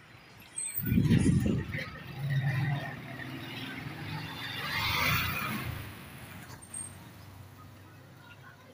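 A motor vehicle passing on the street: a low engine hum, then a swell of traffic noise that builds to a peak about five seconds in and fades. A brief loud low rumble comes about a second in.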